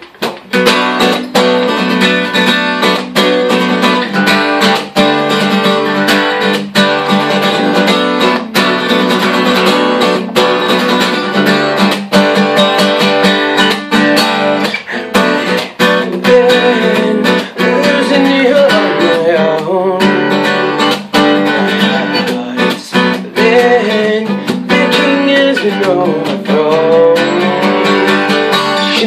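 Acoustic guitar strummed in a steady rhythm as a song's intro. A wordless voice joins in over the guitar in the second half.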